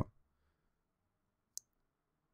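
Near silence, broken by a single brief, high-pitched click about one and a half seconds in.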